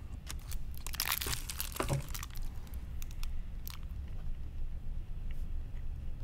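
Candy wrapper crinkling and tearing as a Reese's Big Cup with Reese's Pieces is unwrapped, busiest about a second in, then sparse soft clicks of handling and chewing.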